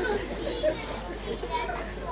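A crowd of listeners chattering and murmuring at once, with children's voices among them.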